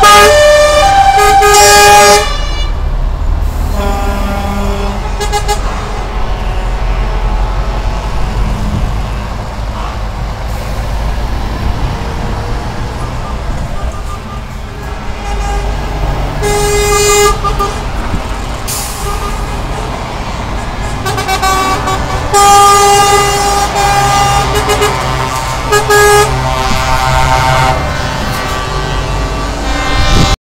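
Convoy of heavy trucks, Scanias among them, driving past close by with a steady low engine rumble. Repeated blasts of multi-tone air horns come near the start, again around the middle, and in a longer run of blasts later on.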